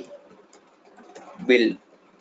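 A man's voice speaks one word about one and a half seconds in. In the quieter stretch before it, faint computer-keyboard key clicks can be heard as text is typed, over a faint, drawn-out low tone.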